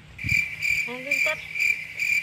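An insect calling in the vegetation: a high, pulsing buzz repeating about two and a half times a second.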